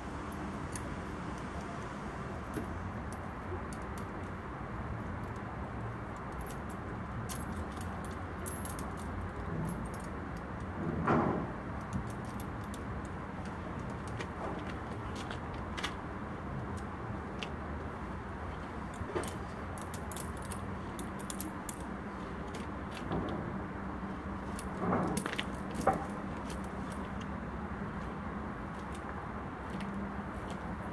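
Steel truck snow chain clinking and jangling as it is worked and pulled tight around a drive-wheel tyre: scattered short metallic clinks with two louder rattles, about eleven seconds in and again around twenty-five seconds, over a steady low hum.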